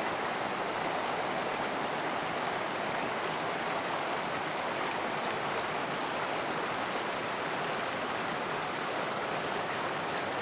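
Shallow, rocky river running over stones and small riffles: a steady, even rush of water with no separate splashes or changes.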